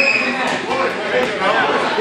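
Many people chattering in a large gym hall, with a brief high squeal right at the start.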